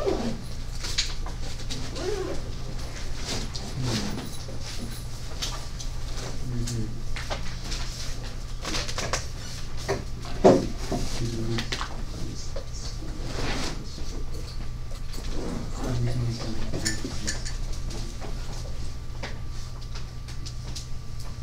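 Classroom room sound: faint, scattered murmuring voices and small knocks and rustles over a steady low hum, with one sharp knock about ten and a half seconds in.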